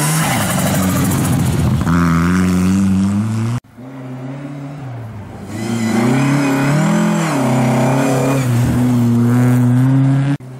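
Rally car engine running at high revs as it accelerates through a corner on a snowy stage, cut off suddenly about a third of the way in. A second rally car's engine then comes in, its pitch rising and falling through gear changes and lifts before it holds high and steady as it passes.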